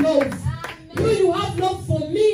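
A woman singing long, held notes into a microphone while people clap along in an even rhythm. Both break off briefly just before the middle and then resume.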